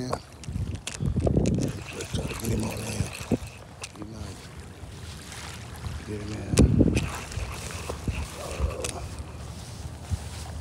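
Wind buffeting a phone microphone in gusts, heaviest about a second in and again around seven seconds, over a steady low rumble. Short indistinct voice sounds come and go between the gusts.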